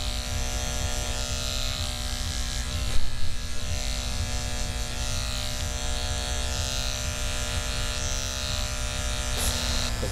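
Cordless electric hair clippers running steadily as the barber cuts along the side of the head, with a brief louder knock about three seconds in.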